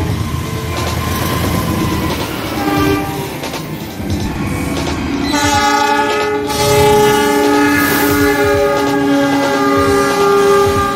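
A diesel-hauled passenger train running on the rails with a low rumble, then from about five seconds in a long, loud multi-tone locomotive horn chord held through to the end.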